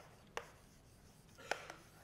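Chalk writing on a blackboard: sharp taps as the chalk strikes the board, about a third of a second in and again, louder, about a second and a half in, followed by a brief scratching stroke.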